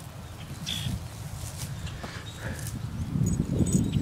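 Small poodle snuffling with its nose in the grass, a few short sniffs, over a low rustling that grows louder near the end.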